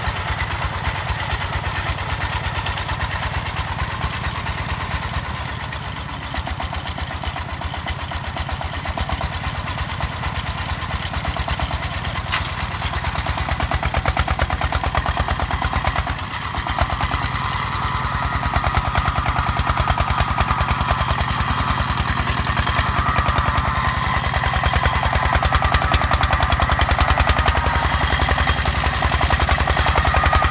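Single-cylinder diesel engine of a công nông farm vehicle running with a fast, even firing pulse, under load as the vehicle drives out of mud. It dips briefly about 16 seconds in, then runs louder from about 18 seconds in.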